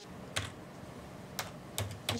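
Typing on a computer keyboard: soft key clatter with three sharper key strokes standing out.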